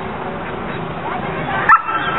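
A dog barking, a few short barks with the loudest near the end, over a background of voices outdoors.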